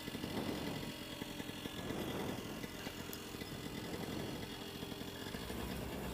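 Moster 185 single-cylinder two-stroke paramotor engine idling steadily, with a fast even firing rhythm that swells and eases slightly.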